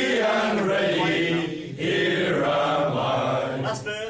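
A group of men singing a song together, unaccompanied, in unison. The singing dips briefly about one and a half seconds in, and the phrase ends near the end.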